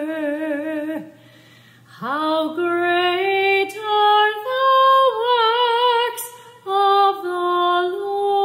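A woman singing solo and unaccompanied, holding notes with vibrato. About a second in she stops for a breath, then slides up into the next phrase and moves through a series of sustained notes.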